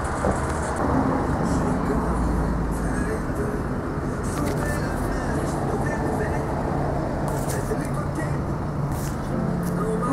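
Steady outdoor street noise with a low vehicle engine hum running throughout, and faint voices in the background.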